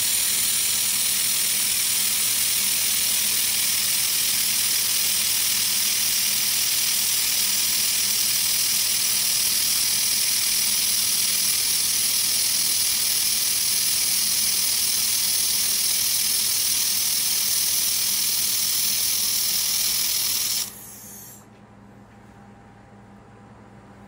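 Handheld laser welder with double wire feed running a bead along a 6 mm stainless steel joint: a loud, steady hiss with a low hum under it, cutting off suddenly about a second before the end as the weld stops.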